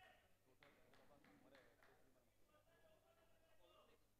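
Near silence on an open ground, with faint distant voices and a brief run of faint clicks.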